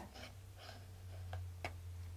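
Two soft clicks at a computer, about midway and a little later, over a faint steady low hum of room tone.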